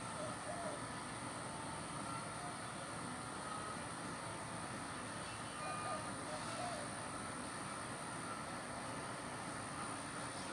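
Steady outdoor background noise with no distinct event, broken only by a few faint short sounds about half a second and six seconds in.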